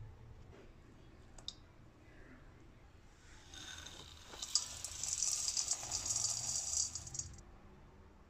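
Dry breadcrumbs being poured from a bowl into a stainless steel mixing bowl of beef mince: a dense, high crackling hiss that starts about halfway in and lasts nearly four seconds.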